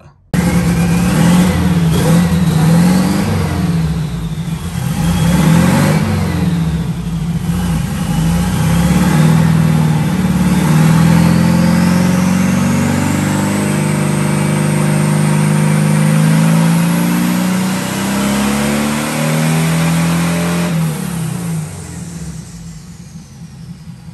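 Turbocharged 1835 cc air-cooled VW flat-four engine being run on a hub dyno. It gives a few short revs, then makes a long pull climbing steadily in pitch with a high whine rising alongside. It eases off near the end.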